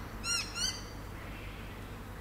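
A bird calling: a quick run of a few repeated rising-and-falling notes that stops less than a second in.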